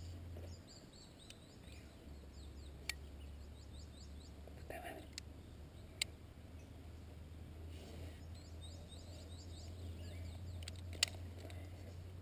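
Faint outdoor background with a steady low hum, three short sharp clicks spread through it, and a faint, distant voice about five seconds in.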